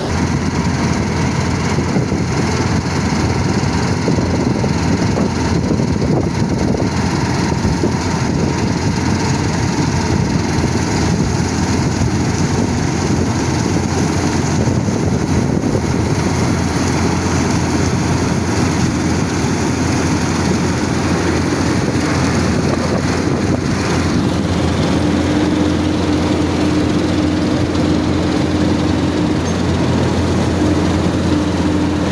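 New Holland combine harvester running steadily under load, its engine and threshing machinery making one dense, continuous sound while it works the wheat. A steady tone joins in for a few seconds near the end.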